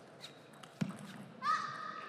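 Table tennis ball clicking off bats and table in a short rally: a few sharp ticks in the first second, the loudest about 0.8 s in. About one and a half seconds in comes a short high-pitched held tone.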